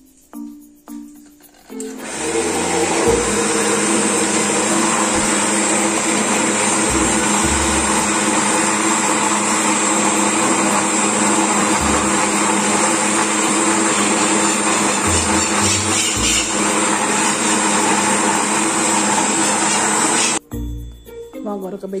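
Electric countertop blender running at a steady speed, mixing a thin cake batter as flour is added through the lid. It starts about two seconds in, runs loud and even, and cuts off suddenly near the end.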